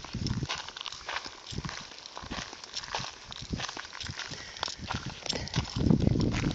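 Wind buffeting a phone microphone in gusts, with irregular crackling clicks; the low rumble swells again near the end.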